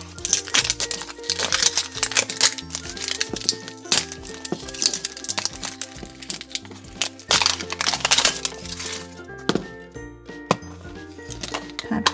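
Crinkly plastic wrapping being crumpled and torn off a Pikmi Pops toy package by hand, in dense crackling runs that thin out after about nine seconds, over background music.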